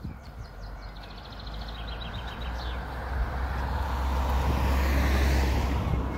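A vehicle passing by: a rumbling rush that builds over several seconds, is loudest about five seconds in, then starts to fade.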